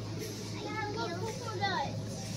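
A young girl's high-pitched wordless voice, a short vocalisation that ends in a falling squeal, over a steady low hum.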